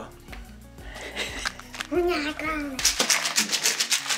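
Quiet talking over background music, turning louder and much higher-pitched for the last second.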